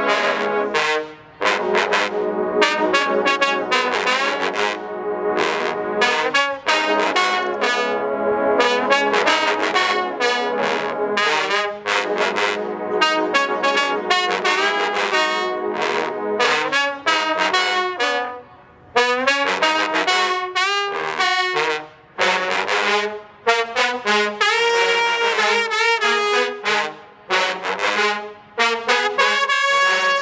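A large trombone ensemble playing together in harmony, sustained chords and moving lines, with a few short breaks between phrases.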